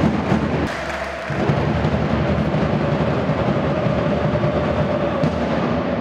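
Supporters beating drums in a steady rhythm, with crowd chanting in the arena.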